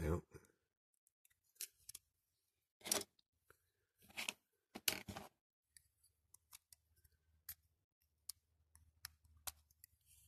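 Small plastic and metal parts of a die-cast toy car clicking and scraping against each other as they are handled and pried apart: a few louder scrapes in the first half, then many quick light clicks.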